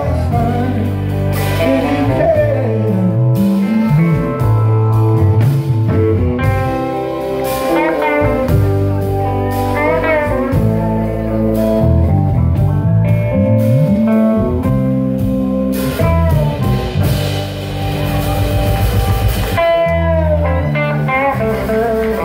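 Live rock band jamming on an instrumental passage: two electric guitars play lead lines with bent notes over bass and drums.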